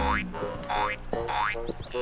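Cartoon 'boing' sound effects: three springy tones that rise in pitch, about two thirds of a second apart, over light background music.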